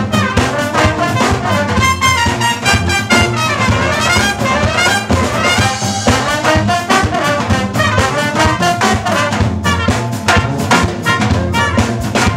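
A live brass band playing: trombones, trumpets and saxophone carrying a busy melody with quick runs that climb and fall, over steady drum strokes.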